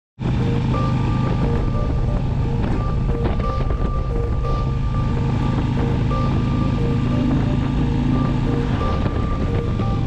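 A country song playing through a touring motorcycle's fairing stereo, over the steady drone of the engine and wind noise at highway speed.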